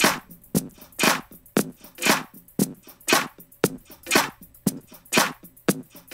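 Drum loop played back through Ableton Live's Texture warp mode at a very large grain size: short sharp hits alternate with longer, noisier hits, about two a second. This is a setting that suits vocals but not percussion.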